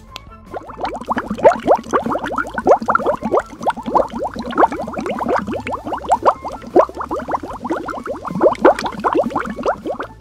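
Cartoon bubbling sound effect from a bubble-blowing machine: a rapid stream of bloops, each a quick rise in pitch, several a second, starting about half a second in.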